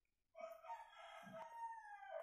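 A rooster crowing once, faint: one long call of about two seconds that drops in pitch at the end.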